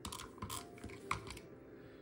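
Handheld adhesive tape runner being rolled across the back of a paper die-cut: a quick run of small clicks and crackles that stops about a second and a half in.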